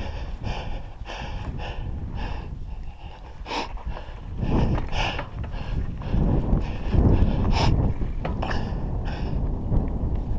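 Raleigh MXR DS 29er mountain bike ridden over a dirt track: a steady rumble of tyres and wind on the microphone, with short knocks and rattles from the bike over bumps, the sharpest about three and a half, five and seven and a half seconds in.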